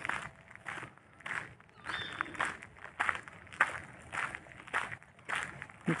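Footsteps at a walking pace, about two steps a second.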